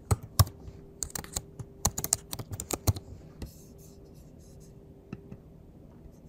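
Typing on a computer keyboard: a quick run of keystrokes for about three seconds, then just a few scattered clicks.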